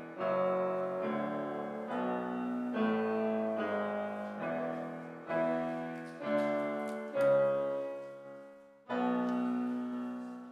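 Piano playing slowly in full chords. A new chord is struck about once a second and left to ring and fade, and one is held longer near the end.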